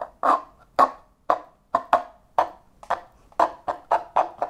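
A steady rhythm of short, sharp percussive taps or clicks, about two a second, beating out a song for the listener to guess.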